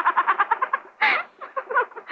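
A woman giggling: a rapid high-pitched run of short laughs, a breathy burst about a second in, then a few more giggles.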